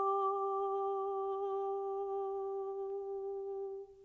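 A soprano voice holding one long, soft, nearly straight final note of the song. It fades out just before the end.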